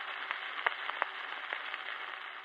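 Surface hiss and crackle from a 78 rpm shellac record played with the stylus in the groove past the end of the music. The hiss starts abruptly, and a sharp click comes about every three quarters of a second as the disc turns.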